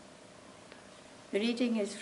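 Quiet room tone for just over a second, then a woman begins speaking.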